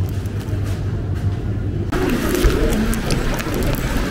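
Steady low hum of a supermarket aisle beside chilled display shelves, cutting off abruptly about two seconds in to the fuller noise of a rain-wet pedestrian street, with a low rumble.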